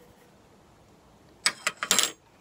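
Disposable plastic glove crinkling as it is handled and held open, a quick run of about five sharp crackles in the last half second.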